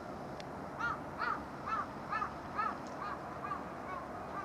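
A crow cawing: a run of about eight harsh caws, roughly two a second, starting under a second in and fading toward the end.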